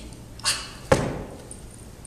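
A short rushing whoosh, then a single sharp thud just under a second in, with a brief echo after it.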